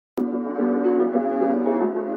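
Instrumental intro of a rap beat: sustained melodic tones with slowly changing notes. It starts suddenly a moment in.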